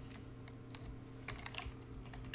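Typing on a computer keyboard: several faint, separate key presses.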